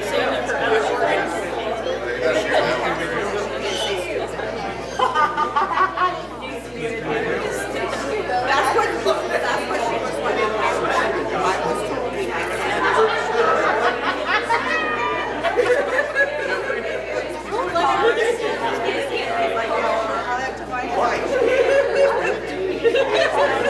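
Overlapping chatter of a congregation exchanging greetings, many voices talking at once in a large hall.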